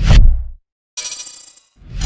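Logo-animation sound effects: a loud, bass-heavy hit that dies away within half a second, a moment of silence, then a bright, metallic, shimmering sparkle about a second in that fades out.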